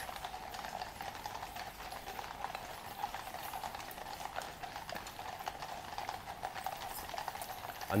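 Hooves of two shod horses walking on the road, clip-clopping in an irregular, overlapping rhythm: a Household Cavalry grey and a police horse.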